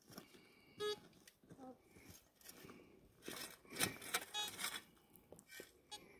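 A few short, faint electronic beeps from a metal detector, with light scrapes and knocks of a shovel digging in gravelly dirt.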